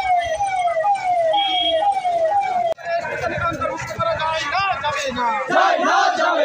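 An electronic siren sounding a repeated falling yelp, about two a second, that cuts off abruptly about three seconds in. After that comes the din of a marching crowd's voices and shouts.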